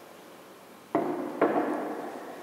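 Two sharp knocks about half a second apart, each with a short ringing decay, as a hard object is put down on a hard surface.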